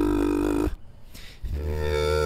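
A man's voice holding long, steady vocal notes: one note ends about two-thirds of a second in, and after a short pause a second, higher note begins.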